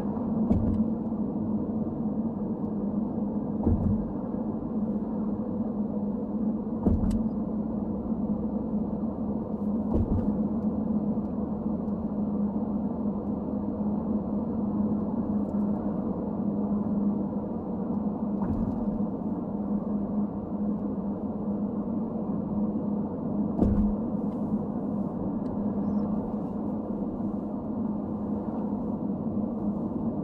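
Steady road and engine noise of a car heard from inside the cabin, with a low hum, driving over a bridge. Several short thumps, a few seconds apart, come as the tyres cross joints in the bridge deck.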